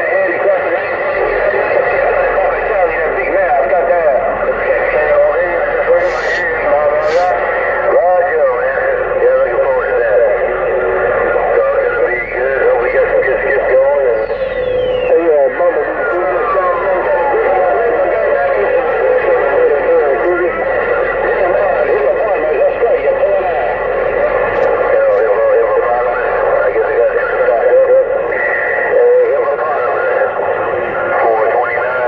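CB radio receiving through its speaker: garbled voices of other stations over static, the sound narrow and tinny. About halfway through, a whistle slides steadily down in pitch. Two sharp clicks come about six and seven seconds in.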